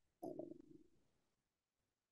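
A man's low, drawn-out hesitation sound, like a hummed "eh…", starting shortly after the beginning and fading out by about a second in, followed by near silence.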